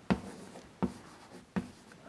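Chalk on a blackboard: three short, sharp taps about three-quarters of a second apart as strokes are drawn.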